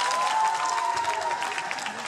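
Spectators applauding with a few high cheering calls. The clapping is loudest in the first second and then eases off.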